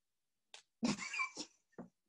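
Brief laughter in a few short breathy bursts, cut to silence between them.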